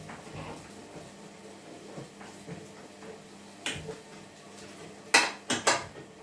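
Metal parts of an electric meat grinder being handled and fitted together: scattered light knocks and scrapes, then three sharp metallic clacks near the end as the metal feed tray goes onto the grinder.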